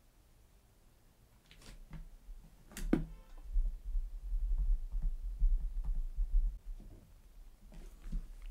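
A couple of short clicks, then a low rumble lasting about four seconds that fades out near the end.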